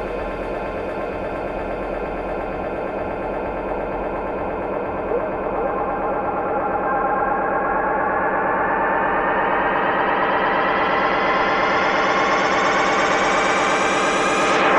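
Electro dance music: a dense, pulsing synthesizer passage in a build-up that grows steadily brighter and a little louder as its filter opens.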